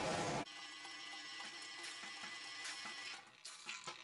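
Faint background music of soft, sustained tones. It follows a loud rushing noise that cuts off suddenly about half a second in.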